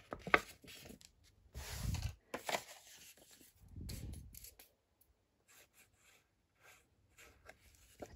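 Paper envelope being folded and handled by hand: a few short crinkles, rustles and light taps in the first half, then mostly quiet.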